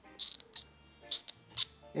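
Several short, faint scratchy rustles and ticks from fingers handling and turning the knob of a small plastic throttle-signal unit.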